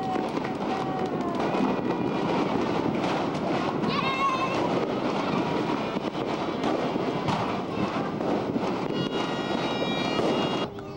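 Firecrackers crackling continuously in a dense run of small pops, with people's voices calling out over them.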